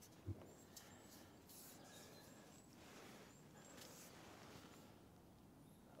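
Near silence: faint outdoor background with a few brief, high, distant bird chirps and a soft knock just after the start.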